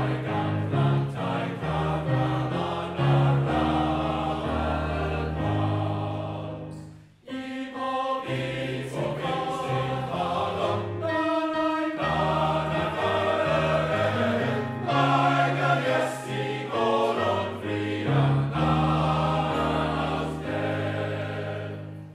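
Male voice choir singing in parts, with deep bass voices under the chords. The singing breaks off briefly twice between phrases, and the last chord fades near the end.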